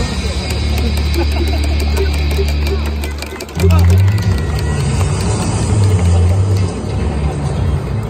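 Music playing loud over a ballpark's public-address system, with a heavy bass line that shifts to a new note about three and a half seconds in, and voices mixed in over it.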